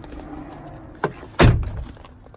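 A click, then a single heavy thump about halfway through, typical of a car door being shut.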